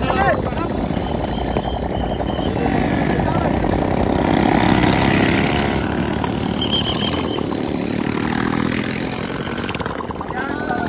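Several motorcycle engines running close by, steady and loud, with men's voices shouting over them.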